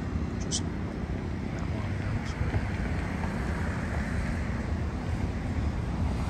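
Steady outdoor background noise, a low rumble with a fainter hiss above it, holding level throughout.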